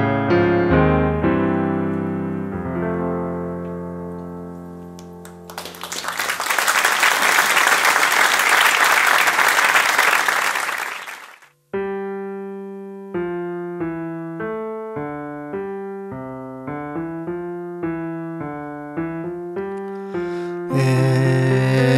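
Piano sound from a Yamaha stage keyboard: the final chords of a song ring and die away, then audience applause for about six seconds. The applause cuts off and the keyboard starts a new piece, a steady line of single notes.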